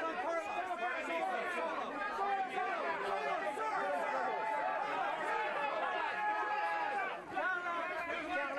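A crowd of press photographers calling out and talking over one another at a red-carpet arrival, shouting to make the celebrities look their way. A drawn-out call carries over the babble from about three seconds in until about seven seconds.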